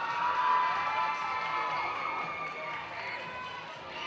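Audience cheering and shouting, many high voices calling out at once.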